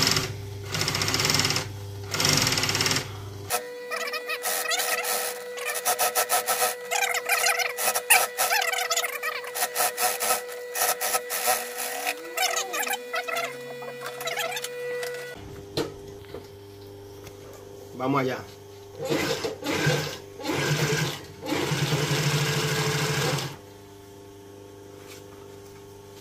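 Industrial sewing machine stitching in loud runs of a few seconds each, its motor humming steadily between them.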